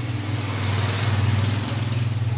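A small engine running steadily with a low hum, slightly louder in the middle.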